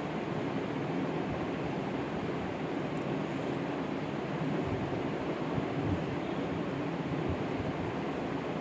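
Steady, even rushing background noise with no distinct events: room noise.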